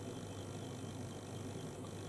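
Quiet room tone: a steady low hiss with a faint constant hum underneath.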